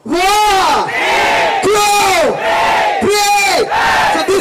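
Voices shouting together in unison, a drawn-out call that rises and falls in pitch, repeated about every three-quarters of a second.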